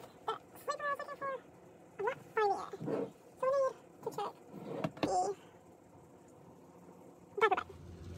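A string of short, high-pitched vocal sounds with sliding pitch, several in the first five seconds and one more near the end, without clear words.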